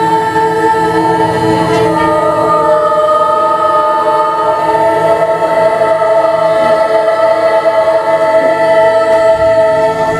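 A mixed choir of teenage girls and boys singing in harmony, holding long sustained chords.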